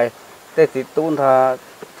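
A man speaking in Hmong, with a short pause near the start and one drawn-out syllable.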